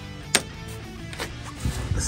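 Background music, with one sharp click about a third of a second in and a weaker one a little after a second.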